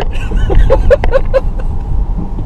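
A person laughing, a quick run of about five short, evenly spaced 'ha' sounds between half a second and a second and a half in, over the steady low rumble of road noise inside a moving car.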